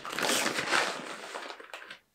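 A treat pouch rustling as a hand reaches into it and takes out a treat; it stops suddenly at the end.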